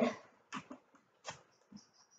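A few soft knocks from a glass jar of soapy water being swirled around by hand, with a few brief high squeaks near the end.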